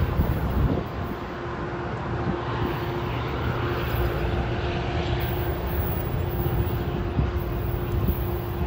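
Metra commuter train pulling away and receding, with the rumble of its cars and the steady drone of the diesel locomotive at the far end of the train. Wind is buffeting the microphone.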